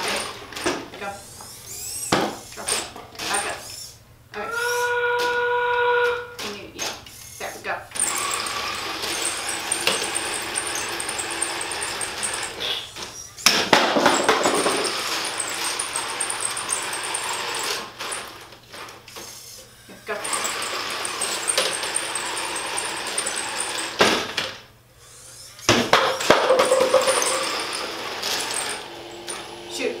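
FTC competition robot's electric drive motors and mechanisms whirring in stop-start bursts as it drives around the field and picks up rings, with a steady pitched whine for about two seconds about four seconds in.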